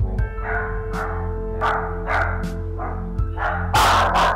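Small dog barking in a rapid run of short barks, loudest near the end, over steady background music.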